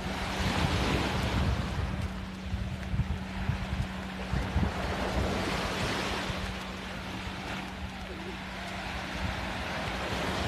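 Small surf breaking and washing up a sandy shore, swelling and easing, with wind buffeting the microphone as a low rumble. A faint steady low hum runs underneath.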